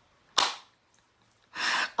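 A single sharp smack of a hand, about a third of a second in, dying away quickly. Near the end comes a breathy, unvoiced burst of laughter.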